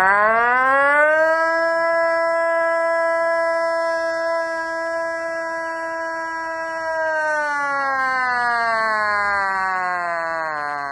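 A man imitating an air-raid siren with his voice through cupped hands: one long, loud wail that rises in pitch over the first second or so, holds steady, then slowly falls from about seven seconds in.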